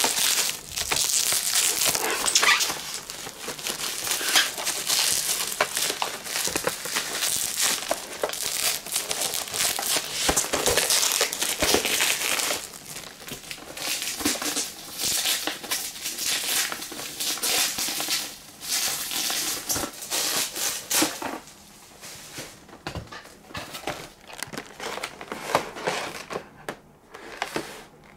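Plastic packaging crinkling and rustling as it is handled and pulled off a model's box: dense, irregular crackling that eases off in the last few seconds.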